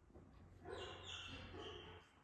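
A dog making a short, quiet vocal sound, in three quick parts, starting a little under a second in.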